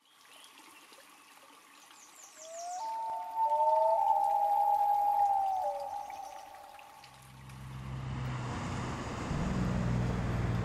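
Water trickling over rocks, with a few high bird chirps. About three seconds in, a common loon gives a long wailing call, two overlapping gliding tones. Near the end a low engine rumble builds in, the diesel of a passing log truck.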